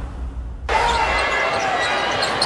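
A low rumbling transition effect under the countdown graphic. About two-thirds of a second in, the game audio cuts in suddenly: arena crowd noise with short sneaker squeaks on the hardwood and a basketball bouncing.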